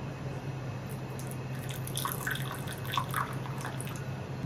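Water dripping and splashing in small drops from a wooden ladle, mostly in the second half, over a steady low hum.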